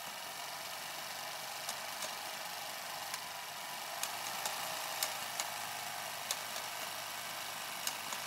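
Steady faint hiss with scattered faint clicks.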